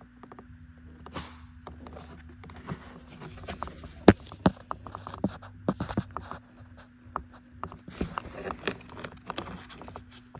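Hands rummaging through a bundle of wires in a plastic cable channel: rustling and scraping with scattered clicks, the sharpest a little after four seconds in. A faint steady hum runs underneath.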